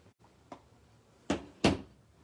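A clear acrylic stamp block knocks twice against a hard surface, two sharp taps about a third of a second apart, as the flower stamp is inked.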